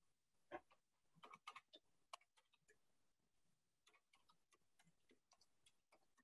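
Near silence with a few faint, short clicks in the first two seconds or so.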